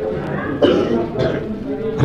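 A man coughing, with a broad burst about half a second in, amid low speech.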